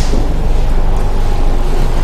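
Loud, steady rushing noise with a deep rumble underneath.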